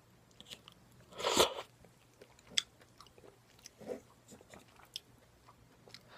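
Close-miked eating sounds of spoonfuls of chawanmushi (steamed egg custard): soft wet mouth and chewing sounds, with one louder burst a little over a second in and a few small clicks after.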